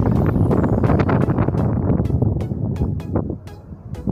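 Wind buffeting a phone microphone, a heavy low rumble that drops away briefly near the end, with background music and a regular beat of clicks beneath it.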